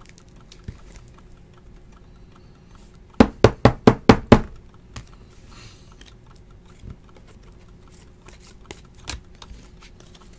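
Hands handling trading cards at a table: a quick run of about six loud, sharp knocks a little after three seconds in, then scattered light clicks of cards being handled.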